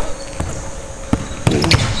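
Basketball bouncing on a hardwood gym floor: a few separate dribble thuds at uneven spacing.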